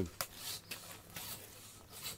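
A railroad-spike knife cutting the hide off a Cape buffalo carcass: a few quiet, short scraping strokes as the blade slices along between skin and flesh.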